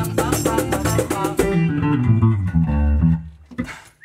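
A live band's closing bars on electric guitar and bass guitar. A rhythmic percussion part stops about a second and a half in, the guitar and bass notes ring on, and a final hit near the end lets the music die away.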